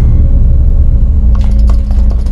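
Loud, deep low rumble in the film's soundtrack that starts abruptly and holds steady. A few faint clicks come about one and a half seconds in.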